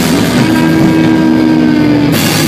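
Live rock band at full volume: distorted electric guitars and bass hold one sustained, steady chord that drones on with hardly any cymbal.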